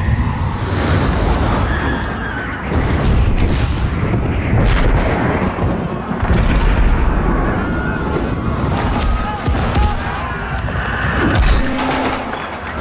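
Action-film sound mix of heavy rumbling, rushing noise with several sharp booms and impacts, with voices and music underneath.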